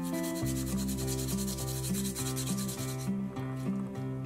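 Garlic being grated on a flat metal rasp grater: fast, even scraping strokes that stop a little after three seconds.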